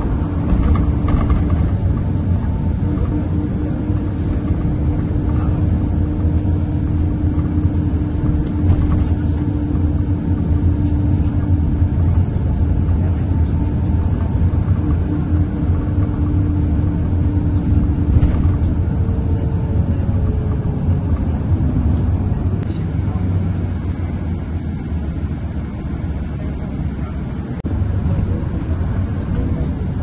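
City bus driving, heard from inside: a steady low engine and road rumble, with a steady hum over it that fades out about two-thirds of the way through.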